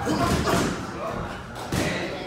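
Three dull thuds in a boxing gym, one at the start, one about half a second in and one near the end, over indistinct voices.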